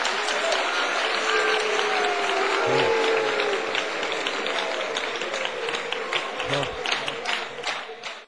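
Audience applause with a few voices calling out among the crowd. It starts as dense clapping and thins to scattered claps as it fades near the end.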